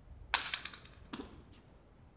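Hard jai alai pelota striking the court during a rally: two sharp cracks, the first and loudest about a third of a second in with a short echo, the second weaker about a second in.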